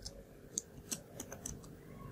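Computer keyboard typing: a few faint, irregularly spaced keystrokes as a line of code is entered.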